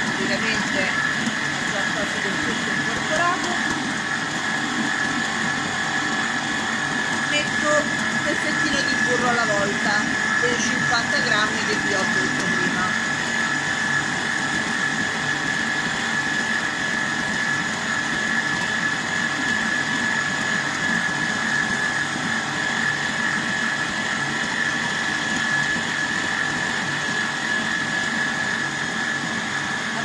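Stand mixer's motor running steadily at raised speed with a continuous high whine, its dough hook kneading bread dough to work in a freshly added egg.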